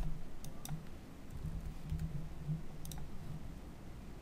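A few separate, sharp clicks from a computer mouse and keyboard, about four spread over the few seconds, over a faint low rumble.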